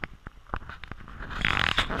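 Footsteps scuffing and clicking on a rocky dirt trail. A louder breathy laugh starts near the end.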